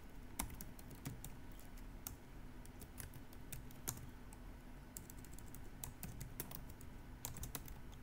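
Quiet typing on a computer keyboard: irregular keystrokes in short runs as a terminal command is entered.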